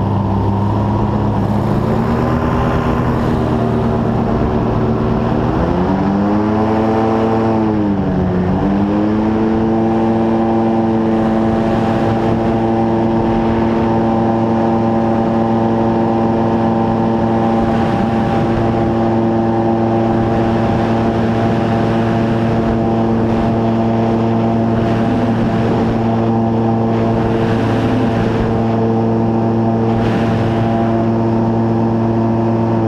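Airboat engine and propeller running at speed. The pitch rises about six seconds in, dips sharply about eight seconds in and climbs back, then holds steady.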